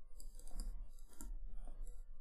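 Stylus tapping and scratching on a tablet screen while handwriting a word: a run of light, irregular clicks.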